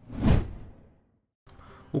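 A single whoosh transition sound effect that swells quickly and fades out within about a second.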